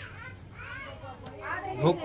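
Children's voices and chatter in the background, fainter than the foreground speech, with a man starting to speak near the end.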